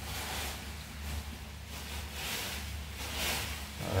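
Fingers mixing a dry seasoning rub in a small glass dish: soft, gritty rustling that comes in a few faint swells, over a steady low hum.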